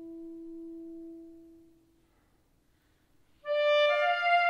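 Solo soprano saxophone: a soft, held low note fades away about halfway through, followed by a brief silence. Near the end a loud, bright high note comes in and steps up to a higher note.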